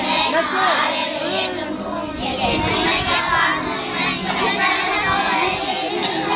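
A group of young children's voices singing together, with some chatter mixed in.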